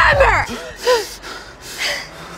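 A woman's anguished, shouted voice trails off while a music bed underneath stops about half a second in. Then comes a short vocal cry and a sharp gasping breath near the end.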